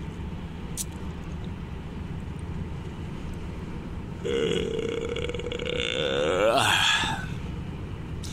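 A man yawning aloud from about four seconds in, for nearly three seconds: a long held note that bends upward near its end. Under it runs the steady low drone of a truck's engine and tyres, heard inside the cab at motorway speed.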